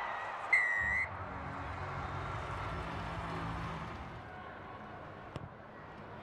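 A referee's whistle gives one short blast, the signal for a try just scored. Stadium crowd noise follows and fades after a few seconds.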